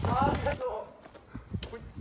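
A person's voice in the first half-second with a bending pitch, then a quieter stretch with a few faint clicks.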